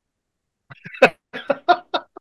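A man laughing in a quick series of short, breathy bursts that start under a second in, with dead silence between them.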